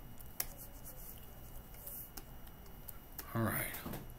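A few sparse clicks at the computer's controls over a low steady hum.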